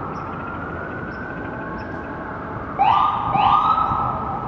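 Emergency vehicle siren sounding through city traffic noise: a long wail slowly rising in pitch, then two louder, quick rising whoops near the end.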